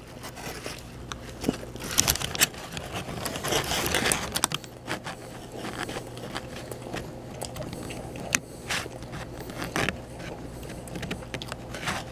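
Paper sandwich wrapper crinkling and rustling as a bagel sandwich is handled, with chewing: a run of crackly scrapes and clicks, busiest in the first few seconds, then sparser, over a steady low hum.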